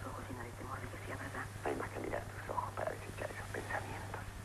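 Muffled, narrow-sounding speech from an old film soundtrack over a steady low hum.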